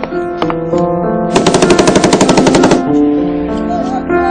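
A burst of automatic gunfire about a second and a half long, roughly a dozen shots a second, starting about a second in, over background music with held keyboard notes.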